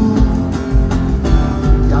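Live band music: an acoustic guitar strummed over electric bass and drums, in a short break in the singing. A voice comes back in at the very end.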